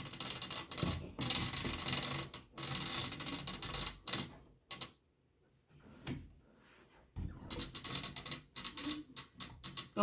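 Handling noise on a wooden Schacht Cricket rigid heddle loom: yarn warp threads rustling and a wooden apron rod scraping and tapping against the frame as the warp is repositioned. It comes in stretches, with a short lull around the middle.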